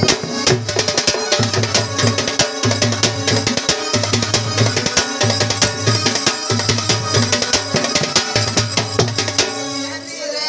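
Folk drumming for an Odia Danda Nacha dance: drums and percussion playing a dense, steady rhythm with no pause.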